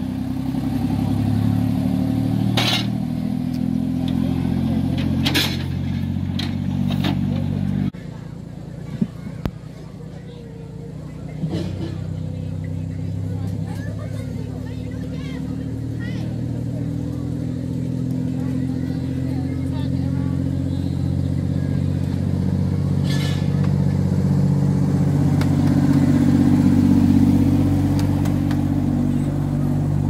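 Diesel engine of a 10¼-inch gauge Alan Keef miniature locomotive running steadily, quieter for a few seconds about eight seconds in, then growing louder over the last few seconds as the locomotive comes nearer. A few sharp clicks sound over it in the first seven seconds.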